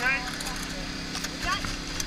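Mostly speech: a voice ends just at the start and a rescuer speaks faintly in the middle, over a steady low engine hum.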